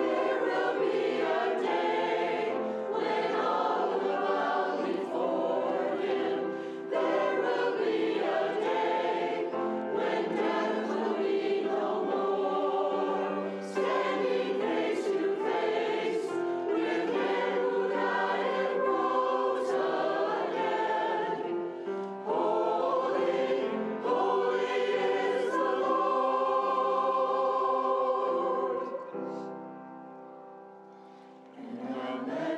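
Mixed church choir singing with piano accompaniment, in sustained phrases with short breaths between them. The sound drops away near the end.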